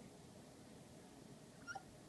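Near silence: room tone, with one faint, brief pitched sound about three-quarters of the way through.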